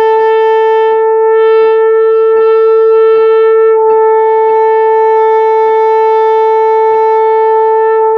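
Tenor saxophone holding one long concert A (written B), played without warming up. It starts out of tune, and the player lips the pitch down a little toward true.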